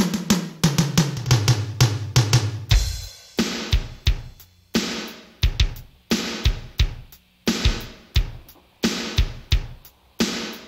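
Band instrumental intro led by a drum kit. It opens with a busy drum fill over falling low notes, and a bit under three seconds in it settles into a steady kick-and-snare beat with cymbals.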